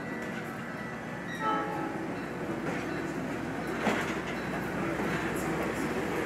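Passenger train cars rolling slowly along the platform track, a steady rumble of wheels on rail. A short high tone sounds about a second and a half in, and a single clank comes near the middle.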